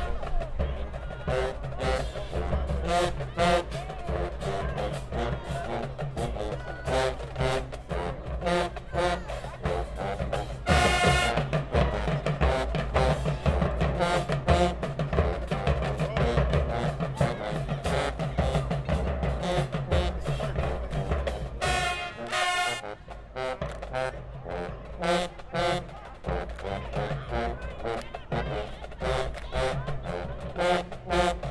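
High school marching band playing HBCU-style in the stands: a drumline keeps a steady beat under the horns. Loud full-band brass blasts come about 11 seconds in and again near 22 seconds.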